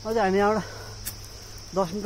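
A steady, high-pitched drone of forest insects. A man's short, wavering voiced sound comes at the start, and his speech begins near the end; the voice is the loudest sound.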